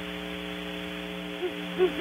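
Great horned owl hooting: two short hoots in the second half, over a steady electrical hum in the webcam's audio.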